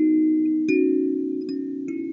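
Lingting K17P 17-key kalimba playing a slow Christmas carol melody, its metal tines thumb-plucked one note at a time. Each note rings on under the next, about three notes in two seconds.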